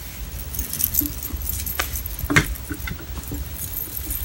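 Metal bangle bracelets jingling and clinking on a wrist as the hands move, with a few sharper clicks about two seconds in, over a low steady hum.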